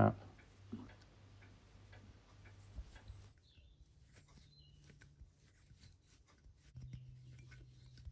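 Faint small ticks and scrapes of an M4 tap being turned by hand in a tap wrench, cutting threads into a thin aluminium plate, over a low steady hum.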